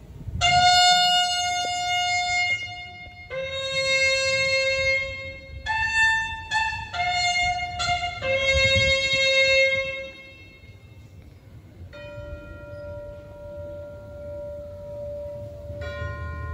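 A solo military bugle call played in long held notes, with a quick run of shorter, higher notes in the middle, then a softer sustained note near the end.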